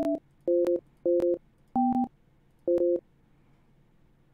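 Touch-tone (DTMF) phone keypad tones: five short two-tone beeps at uneven intervals, each key giving a different pair of tones. This is a host PIN being keyed in at an automated phone prompt.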